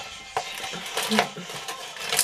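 Light knocks and rustles of a cardboard box of cereal bars being handled, in a few short clicks.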